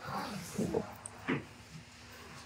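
Faint, indistinct voices of people off-mic: a few short sounds about half a second in and again just past the middle, with no clear words.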